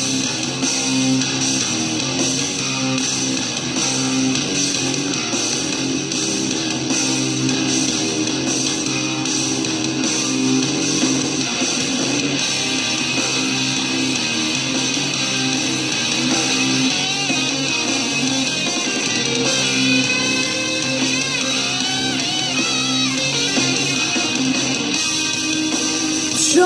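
Instrumental rock backing track, with distorted electric guitars and bass playing a steady section without vocals.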